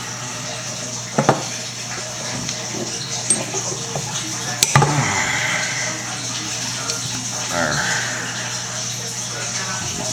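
Two sharp metallic clicks, about a second in and just before the middle, from a hand ring-crimp tool and brass manifold fittings being handled on a stone countertop, over a steady background hum.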